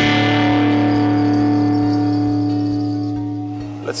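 Music sting: a single guitar chord, struck just before, ringing out and slowly fading, then cut off near the end.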